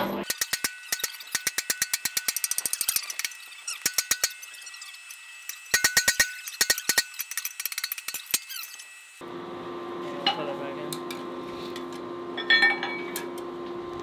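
A hand hammer strikes a steel punch set in a hot steel billet on a swage block, driving the eye hole of a forged hammer head. The blows come in quick runs with a ringing metallic tone. After about nine seconds the hammering stops and a steady low hum takes over, with a few scattered knocks.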